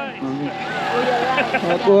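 A car running close by, growing louder toward the end, with short bits of voices over it.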